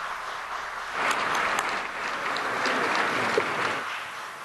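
Applause from a group of people, a dense patter of clapping that swells about a second in and eases near the end. It greets a reported rocket stage separation.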